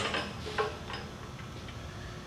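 A sharp metal clack right at the start, then a few faint clicks in the first half second, as the lower throat arm of a Mechammer MarkII planishing hammer is handled and moved out of its mount. After that only the quiet room tone of the shop remains.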